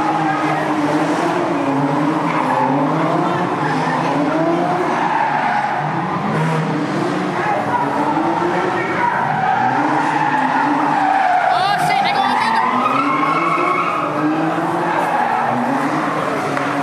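A car doing donuts or drifting: the engine revs and the tyres squeal in a rising-and-falling cycle about every couple of seconds.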